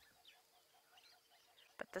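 Near silence with faint distant bird calls, including a quick run of evenly spaced low notes.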